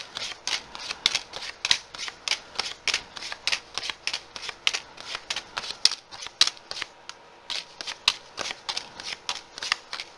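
Tarot cards being handled on a table: a run of quick, crisp card snaps and slaps, about three to four a second, with a short pause about seven seconds in.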